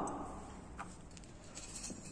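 Low room tone with two faint taps about a second apart, from objects being handled on a tabletop.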